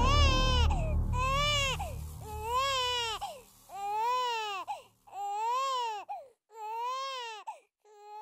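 An infant crying in a run of wails, each one rising then falling in pitch, about one every second and a half. A deep low rumble underneath fades out within the first three seconds.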